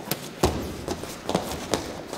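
Wrestlers' bodies and feet thumping and scuffing on a padded wrestling mat as the bottom wrestler does a stand-up escape: about five dull thuds and footfalls, the heaviest about half a second in.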